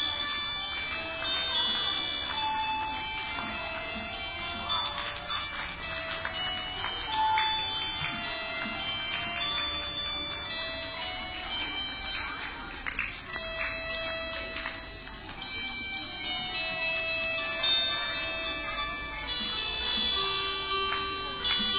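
Electronic keyboard playing a slow, simple melody of single held notes, one after another.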